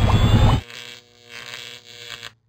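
Electronic outro sting. A loud, buzzy low sound cuts off abruptly about half a second in, followed by a quieter, steady held electronic tone.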